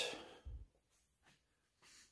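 Near silence: a short exhale trails off at the start, and a soft low thump comes about half a second in.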